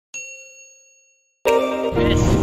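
A single bell 'ding' notification sound effect as the subscribe-button animation's bell icon is clicked, ringing out and fading over about a second. Near the end a much louder sound with steady tones cuts in abruptly.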